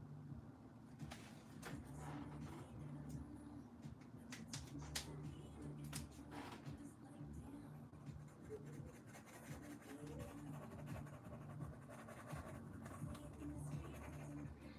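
Fine-tipped permanent pen drawing on collaged, painted paper: faint scratching of the pen strokes, busiest in the first half, over a low steady room hum.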